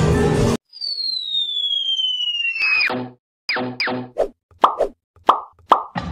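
Cartoon sound effects for an animated intro: a high whistle-like tone falls slowly in pitch for about two seconds. A run of about six short plops follows, several with a quick downward drop in pitch.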